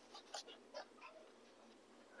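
Near silence: a pause between spoken sentences, with a few faint short sounds.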